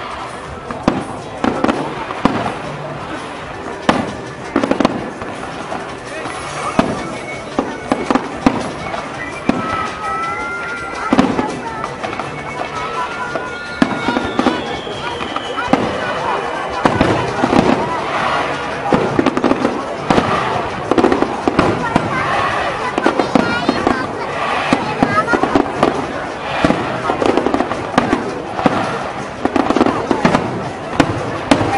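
Fireworks display: aerial shells bursting with repeated sharp bangs, coming thicker in the second half.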